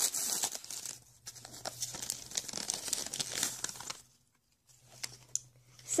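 Wrapping paper being torn and crumpled by hand as a small gift box is unwrapped, in crackling bursts for about four seconds, then a brief pause and a few light crinkles near the end.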